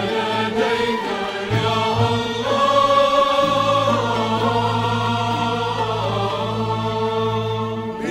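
Choir singing slow Maronite-rite liturgical chant. About halfway through, the voices settle into a long held chord over a sustained low note.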